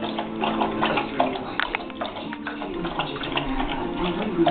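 Doberman eating from a raised bowl: an irregular run of short chewing and lapping clicks, several a second, with steady background music underneath.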